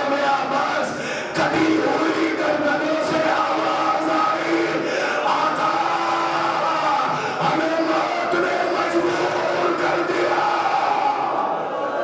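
A crowd of mourners weeping and wailing aloud together, with a man's voice chanting a lament over them through a microphone: the collective ritual weeping that answers the recitation of a martyrdom account (masaib) at a Shia majlis.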